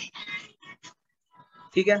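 Speech only: short broken fragments of a voice with brief pauses between them.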